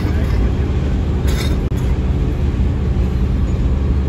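Steady low rumble of road and wind noise inside a moving car at highway speed, with a couple of brief brighter rustles near the start and about a second and a half in.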